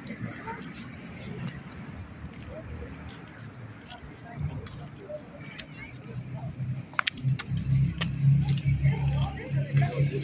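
Outdoor background of people talking at a distance, with a low steady hum that swells and becomes loudest in the second half.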